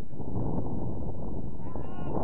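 Steady wind rumble on the microphone, with a player's distant shout on the pitch near the end.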